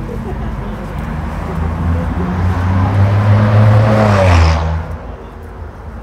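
A motor vehicle driving past close by, its low engine hum building for a few seconds and then dropping away sharply about five seconds in, with street chatter around it.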